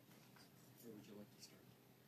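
Near silence: room tone, with a faint, distant voice murmuring briefly about a second in.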